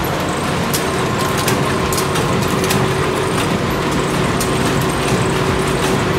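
Cashew de-shelling and cutting machines running: a steady mechanical din with frequent irregular clicks and clacks.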